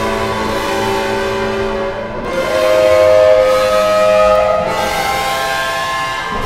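Electric guitar played through a Max/MSP effects patch, ringing out long sustained, pad-like notes. The held notes change about two seconds in and again near five seconds.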